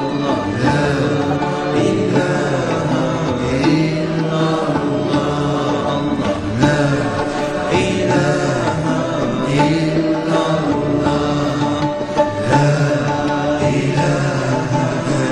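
Music with chanted singing voices, steady throughout.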